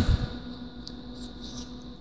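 Faint steady hum in a quiet room, with one small click about a second in.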